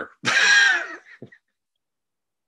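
A person laughing once, a short high-pitched laugh lasting under a second, heard over a video call.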